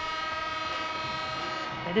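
Ice hockey arena's horn sounding one long, steady blast to signal the end of the game, cutting off near the end.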